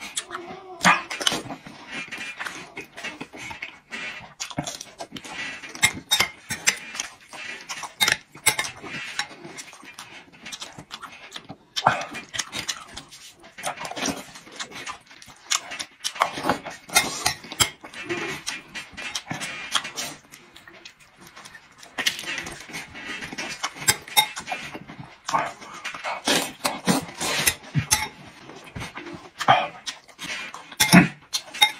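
Close-up eating sounds: a man chewing and slurping mouthfuls of rice and dried chilies, with a metal spoon clinking and scraping against a ceramic bowl in sharp clicks throughout.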